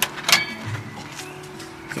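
Background music, with a sharp click about a third of a second in as the charging connector is pulled out of the fast charger's holder.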